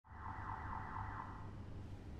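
A warbling, alarm-like electronic tone pulsing about four times a second, fading out after about a second and a half, over a steady low hum.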